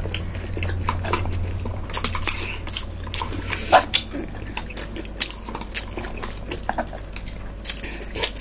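Close-miked chewing and wet mouth sounds of two people eating Pad Thai rice noodles, with scattered small clicks and smacks, over a steady low hum.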